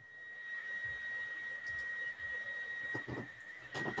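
A long, deep breath that swells over about a second and holds for about two more, over a steady high-pitched electronic whine.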